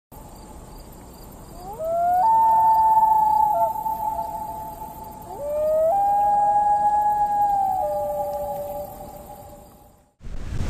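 Two long wailing animal calls, each sliding up in pitch and then held for a couple of seconds, the second one fading away near the end.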